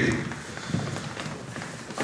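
Many feet shuffling and tapping on a stage floor as a group dances fast, a loose patter of soft steps under a hall's background noise.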